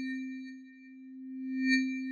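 Electronic transition sound under a title card: a steady low synthesized tone with a bright, bell-like shimmer above it that fades and then swells again near the end.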